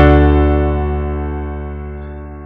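A D major chord with a low bass note, played on a Kurzweil Academy digital piano: struck once at the start and left to ring, fading away steadily.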